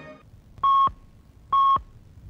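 Radio time-signal pips marking the hour: two short, identical beeps about a second apart, each a single clear tone. The tail of the theme music fades out just before the first pip.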